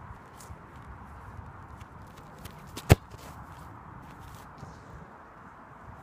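A football kicked once, a single sharp strike about three seconds in, over a faint outdoor background with a few soft scattered clicks.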